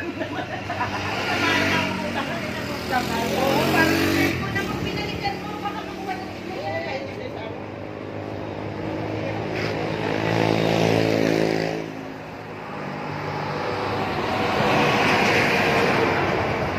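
Road traffic: several vehicles pass one after another, each engine sound swelling and fading.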